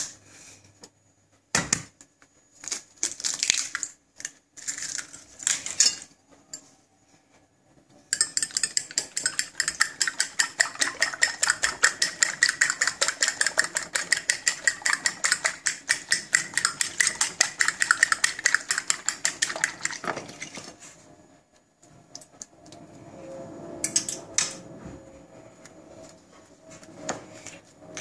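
Metal fork beating raw eggs on a china plate: a fast, even run of clicking strokes against the plate that lasts about twelve seconds. Before it come a few scattered taps and clicks as a second egg is cracked, and near the end softer sounds as bread is pressed into the beaten egg.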